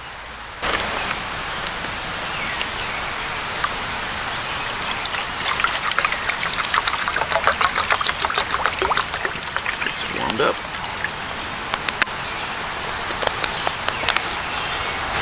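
Water poured from a plastic bottle into a small camp cooking pot, splashing and gurgling for about five seconds in the middle, over a steady rushing background.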